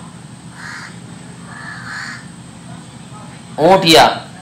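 A crow cawing faintly twice: a short caw about half a second in and a longer one around two seconds in. A man's voice speaks a word near the end.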